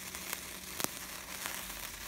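A sparkler burning with a steady fizzing crackle, with one sharper snap just before the middle.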